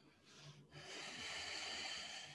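A woman's breath close to the microphone: a short faint breath, then a long audible exhale of air starting about three-quarters of a second in, timed to a yoga movement.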